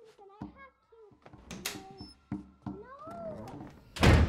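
A girl's voice whimpering in wavering, rising-and-falling wails, with a few knocks. A loud sudden noise starts right at the end.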